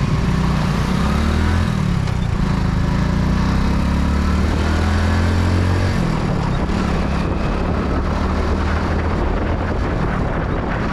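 Motorcycle engine running at road speed under wind rushing over the microphone. The low engine note shifts about two seconds in and again around six seconds in as the ride's speed changes.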